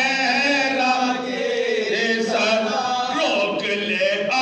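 Several men chanting a soz, an unaccompanied Urdu elegiac lament, in a sustained melodic line, one voice leading with others joining in.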